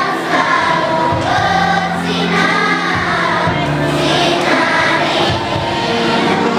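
A large children's choir of fifth-grade school pupils singing together, with held low notes sounding beneath the voices.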